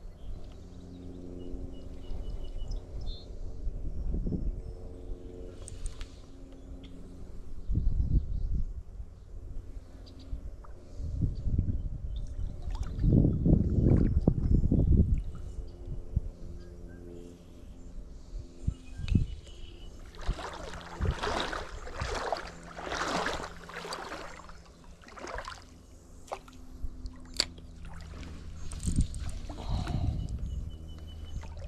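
Wind gusting over the microphone in low rumbles, strongest a little before the middle, followed by a few seconds of rustling hiss after the middle. A faint steady low hum and a few small clicks run underneath.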